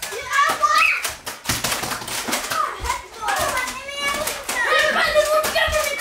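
Children playing a Nerf blaster battle: excited children's voices over a quick run of sharp clicks and knocks, densest in the first half.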